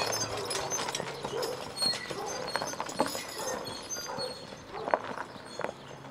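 Hooves of a team of Percheron draft horses clip-clopping on the road at a walk, growing fainter as the team moves away.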